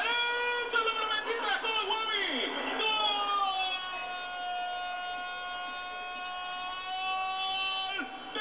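Football commentator's goal call: a few excited shouted syllables, then one long drawn-out "gooool" held at a steady pitch for about five seconds.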